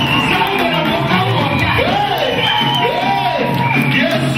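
Loud live band music with singing, and the audience clapping and shouting along.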